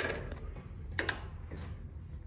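Rebuilt Jeep CJ5 manual gearbox's input shaft being turned by hand so the next gear can engage, its gears giving a few light metallic clicks. One click comes at the start and the clearest pair comes about a second in.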